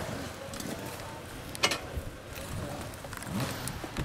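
A few sharp knocks and clicks, the loudest about one and a half seconds in, over faint voices.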